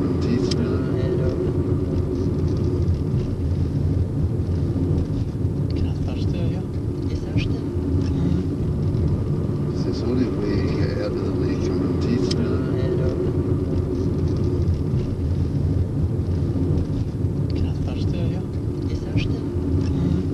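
Steady low rumble of a car's engine and road noise, heard from inside the cabin, with faint indistinct voices now and then.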